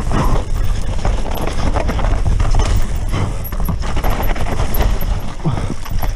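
Full-suspension mountain bike (a Santa Cruz Megatower) descending rough dirt singletrack at speed: a continuous low rumble of tyres over the ground with a dense, irregular rattle of knocks from the chain and frame.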